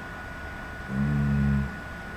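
A man's drawn-out hesitation sound, a hum held on one steady pitch for just under a second, starting about a second in.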